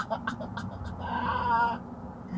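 A man's laughter trailing off in quick short bursts, then a drawn-out, wavering high-pitched cry lasting about a second, over the steady low hum of the car's cabin.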